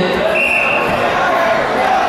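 Voices and chatter of spectators and officials in a large sports hall, with a short high steady tone about half a second in.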